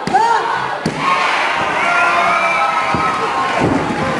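Wrestling crowd shouting and cheering, many voices overlapping, with one loud single shout at the start. A single thud comes about three seconds in.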